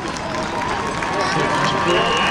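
Stadium crowd in the stands: many spectators talking and cheering, growing louder.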